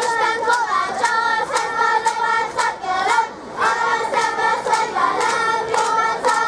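Children's voices singing a Hungarian folk song together in unison over a steady beat of sharp strikes about twice a second, with a short break between phrases about three seconds in.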